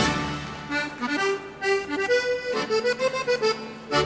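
Accordion playing a song's instrumental introduction: a loud chord dies away, a melody of held notes follows, and a full chord is struck again at the end.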